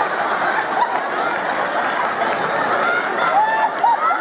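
A theatre audience laughing and applauding in response to a stand-up joke, a steady dense wash of clapping and laughter, with a few higher laughing voices standing out near the end.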